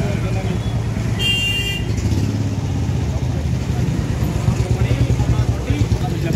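Motorcycle engine running close by with a steady low rumble. A brief high-pitched toot comes about a second in.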